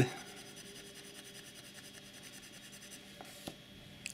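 Broad steel fountain-pen nib scribbling back and forth on paper, a faint scratchy rubbing that stops about three seconds in. It is followed by a couple of light ticks.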